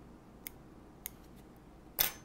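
Small scissors snipping stray chenille fibres off a hand-tied crappie jig held in a tying vise: two faint, short snips about half a second and a second in.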